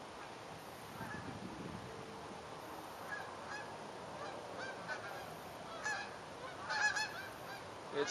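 A flock of geese honking as they fly over, with short calls that start faint and grow louder and more frequent toward the end.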